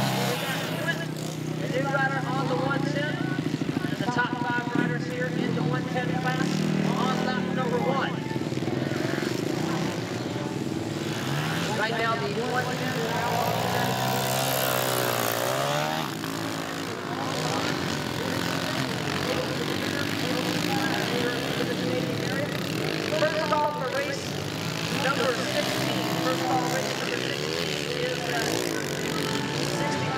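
Several 110cc auto-clutch youth dirt bikes racing, their engines revving up and down at different pitches. One bike's engine rises and falls in pitch about halfway through.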